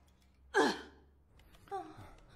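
A woman's single short pained groan, falling steeply in pitch, about half a second in. A brief voice sound follows near the end.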